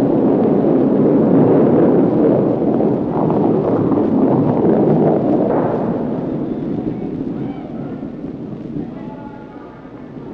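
Granite curling stone running down the ice: a loud rumble that starts suddenly as the stone is released and fades over the last few seconds as it slows to a stop.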